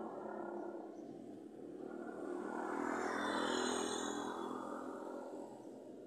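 A vehicle passing along the street, its sound swelling and then fading away; it is loudest about halfway through.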